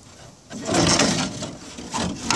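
A scraping, rustling noise about half a second in, lasting about a second and a half, as the loose plastic front grille is lifted and shifted.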